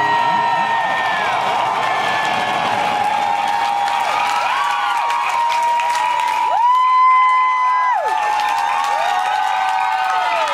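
Club crowd cheering and screaming as the song ends, many high-pitched screams overlapping over clapping. About seven seconds in, one long scream, held for over a second, is the loudest sound.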